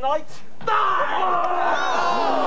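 A short voice, then, under a second in, many voices suddenly shouting together and carrying on.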